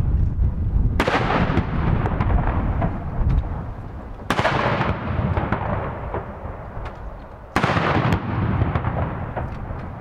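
Ceremonial field guns of a nineteen-gun salute firing: three shots about three seconds apart, each followed by a long rolling echo that dies away.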